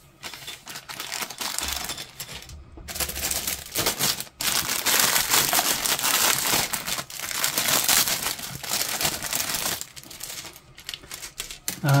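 Plastic kit parts bags crinkling and rustling as they are handled, with a couple of short breaks, dying down to a few crackles over the last two seconds.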